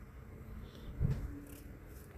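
Quiet room tone with one soft, low thump about a second in.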